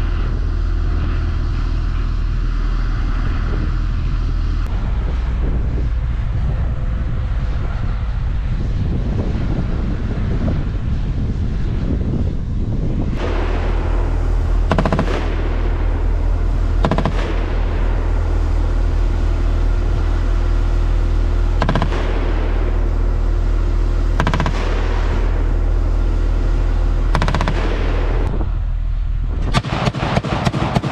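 Armored vehicle diesel engine running as a steady low drone. From about halfway through, single loud shots ring out every two to three seconds. Right at the end a rapid burst of automatic cannon fire starts.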